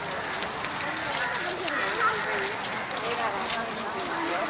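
Many voices chattering at once in a walking crowd, none standing out, with light scuffing footsteps on pavement.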